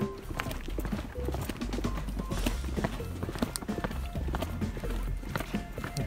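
Footsteps of several people walking on the concrete floor of a bobsled track, a patter of irregular scuffs and taps over a low rumble, with faint background music.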